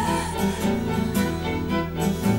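Instrumental passage of a slow ballad: acoustic guitar picking under a small string section of violins and cello, with no singing.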